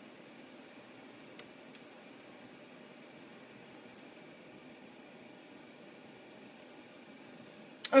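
Faint steady hiss and hum of the Dell Inspiron 1525 laptop's cooling fan running while Windows shuts down. Two faint clicks come about a second and a half in.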